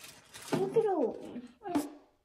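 A young child's voice whining in two drawn-out, high cries that fall in pitch, the second one short.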